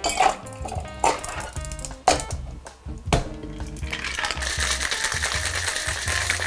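Ice cubes dropped one handful at a time into a metal cocktail shaker tin, making a few separate clinks. From about four seconds in, the closed shaker is shaken and the ice rattles rapidly inside it.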